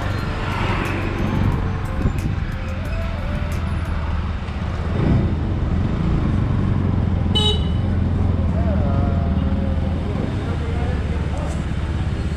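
Bajaj Pulsar NS200 single-cylinder engine running steadily as the motorcycle rides through town traffic, with one brief horn toot about seven seconds in.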